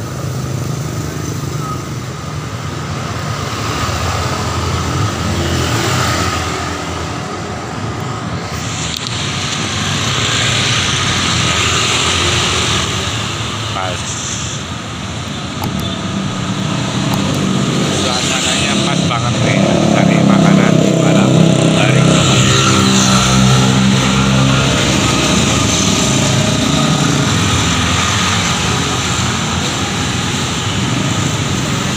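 Street traffic: cars and motorcycles passing on the road, louder for several seconds in the second half as an engine passes close, with voices in the background.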